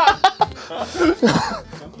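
Two men laughing hard, the laughter breaking into a quick run of short, cough-like bursts and then a falling, high laugh.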